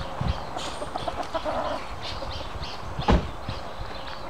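Farmyard fowl calling while feeding: a steady run of soft, high peeps with a short spell of clucking midway. A single sharp thump comes about three seconds in.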